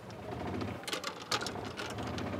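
Golf cart motor running with a steady low hum as the cart moves off, with a few light clicks and rattles about a second in.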